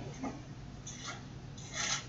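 Thin Bible pages being leafed through and rubbed by hand, soft paper rustles with the clearest one just before the end.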